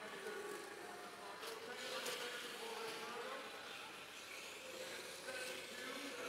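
Faint arena sound: the whine of the competition robots' electric motors over the hall's background noise, with a few weak wavering tones.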